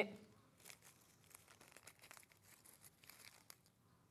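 Near silence with faint, scattered small clicks and rustles of handling, stopping shortly before the end.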